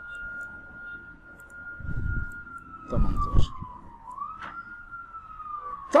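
An emergency-vehicle siren wailing in one slow tone: it rises, holds, dips about four seconds in, then rises again and falls away.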